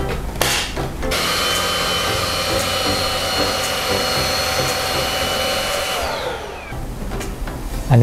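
Xiaomi Mi Handheld Vacuum Cleaner 1C cordless vacuum switched on about a second in and run over a leather sofa, a steady motor whine with airflow. It is switched off around six seconds in, and its pitch falls away as the motor spins down. A few handling clicks come just before it starts.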